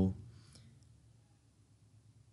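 A voice trails off at the start, then a faint click about half a second in, followed by quiet room tone.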